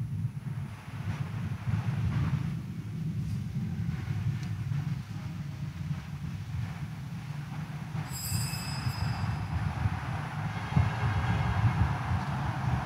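A steady low rumbling background noise, with a brief high-pitched sound about eight seconds in.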